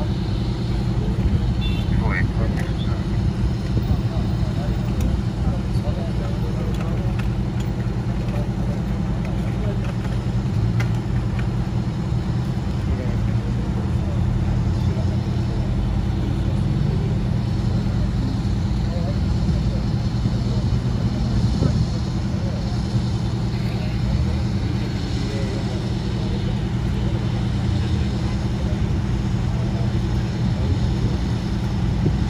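Steady low drone of idling fire-apparatus diesel engines at an accident scene, with a few light clicks and knocks.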